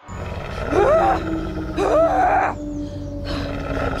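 Wolves snarling and growling in two short bursts about a second apart, over a low steady music drone.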